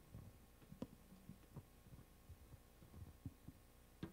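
Near silence: room tone with a faint steady hum and a few soft, low knocks scattered through it, the clearest about a second in.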